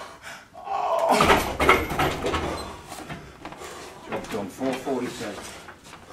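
A man groaning and gasping under the strain of a heavy leg-press set at 550 lb, with a loud heavy thump about a second in and more strained vocal sounds near the end.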